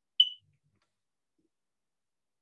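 One short, high electronic beep, a brief blip about a quarter second in.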